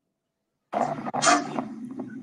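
Dead silence that cuts off about two-thirds of a second in as a microphone opens, followed by close breathing and a low steady hum from the open microphone.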